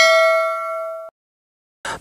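A single bell-like ding sound effect, made of several steady ringing tones, fading and then cut off abruptly about a second in.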